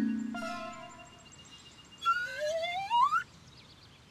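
Cartoon music and sound effects: a held musical note fades out over the first second, then about two seconds in a rising, whistle-like sweep climbs in pitch for a little over a second.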